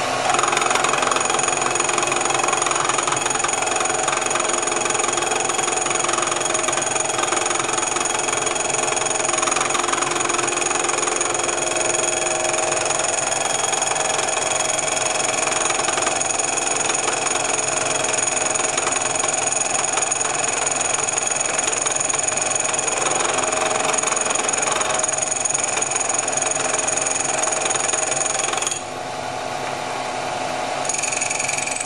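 Vertical milling machine running, its spinning cutter taking a shallow cut across the crown of a hypereutectic aluminium piston as the table feeds it through, reducing the piston's compression height. A steady machining noise with high steady whining tones, dropping in level near the end.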